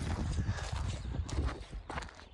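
Wind buffeting the microphone in an uneven low rumble, with a few short clicks or knocks in the second half.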